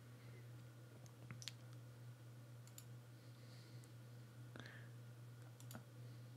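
A few faint computer-mouse clicks, spaced a second or more apart, over a low steady hum; otherwise near silence.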